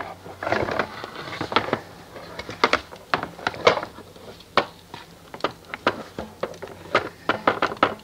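Irregular light knocks and clicks, several a second, of a wash brush and soap bucket being handled.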